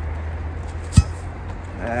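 A single sharp knock about a second in, as a magnet-fishing magnet and a rusty iron bar pulled from the water are handled against each other, over a steady low rumble.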